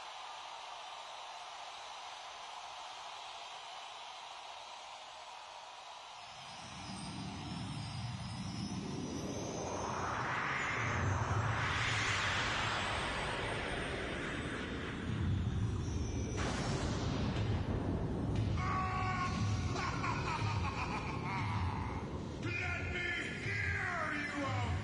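Crowd noise in a large arena, then live rock music fading in about six seconds in. It builds in a rising swell that peaks about halfway, then settles into a pulsing low beat with higher instrument notes over it.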